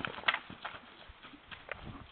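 Hoofbeats of a Morgan horse moving loose at a trot and canter over a dirt and gravel paddock: irregular thuds, the loudest about a third of a second in.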